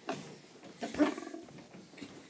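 A short animal-like vocal noise from a child, imitating a toy horse, about a second in, amid otherwise low background noise.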